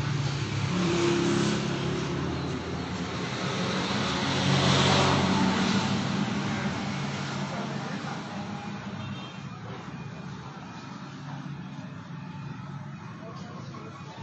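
A motor vehicle engine passing by. It swells to its loudest about five seconds in, then fades to a quieter background.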